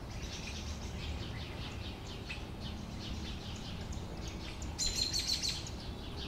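Sparrows chirping, many short chirps overlapping throughout, with a louder burst of chirping about five seconds in. A low steady rumble lies underneath.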